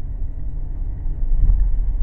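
Steady low rumble of a vehicle in motion, with no other distinct event.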